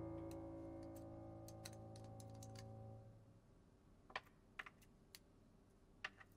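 A sustained low music chord fades away over the first three seconds. Over it and after it come a scattering of small, faint clicks and taps of small objects being picked up and set down on a wooden dressing table. The sharpest taps come in the second half, one about every half second.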